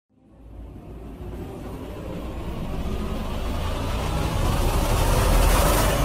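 Car driving through a road tunnel: a low rumble of road and engine noise that grows steadily louder from the start, with rising hiss, swelling to a peak near the end.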